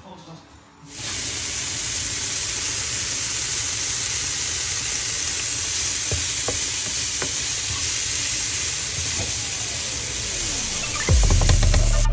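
Diced bacon and mushrooms sizzling in a frying pan, starting about a second in, with a few scrapes of the spatula as they are stirred. Loud bass-heavy electronic music cuts in near the end.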